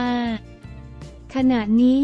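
Narrated news speech over steady background music: a drawn-out vowel at the start, then a pause of about a second with only the music, then the voice resumes.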